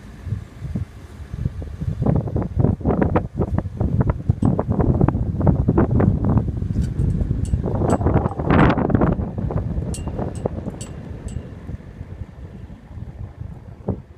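Wind buffeting the microphone on a sailing yacht's deck, gusting loud from about two seconds in, with a stronger rush near the middle, then easing off toward the end.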